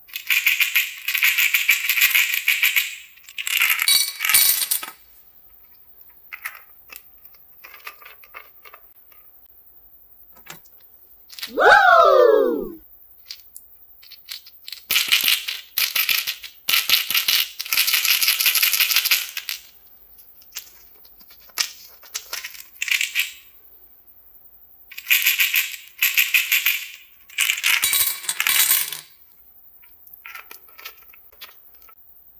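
Jelly beans rattling inside small bottles and jars as they are shaken, in several bursts of a few seconds each. About midway, a loud falling tone lasting about a second.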